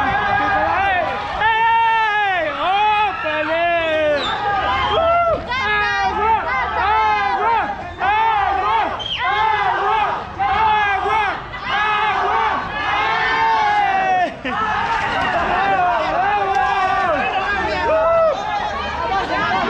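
A crowd of young voices shouting and chanting almost without a break, the high-pitched voices rising and falling, with only brief lulls.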